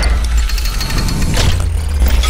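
Cinematic intro sound design: a deep bass rumble under a noisy whooshing wash, with a brighter swish about one and a half seconds in.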